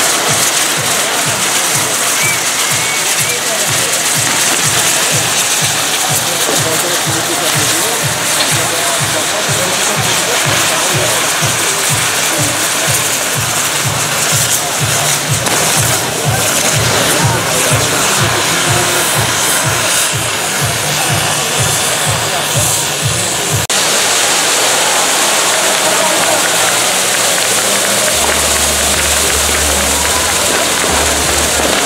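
Maltese ground fireworks: spinning firework wheels driven by burning fountains, giving a loud continuous rushing hiss with a fast low pulsing beneath it. The pulsing stops abruptly about 24 seconds in, and a steady low hum starts near the end.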